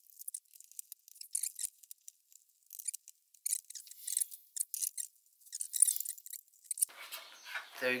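Thin, high-pitched plastic clicks and scrapes, coming irregularly, as the plastic stand neck is fitted and handled on the back of an LG monitor.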